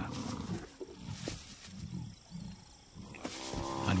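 Lions growling low and repeatedly while holding down a buffalo bull, with a longer, steadier call near the end.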